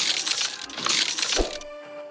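Soundtrack of a stop-motion film: music under two loud hissing sound-effect bursts in quick succession, the second ending in a short heavy thud.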